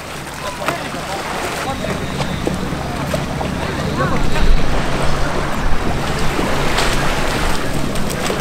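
Seashore ambience: wind buffeting the microphone over small surf breaking at the water's edge, with scattered voices. A low steady hum comes in about two seconds in and is loudest in the middle.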